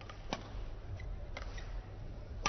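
A badminton racket strikes a shuttlecock in a rally: one sharp crack about a third of a second in, then a couple of fainter clicks, over the low rumble of a sports hall.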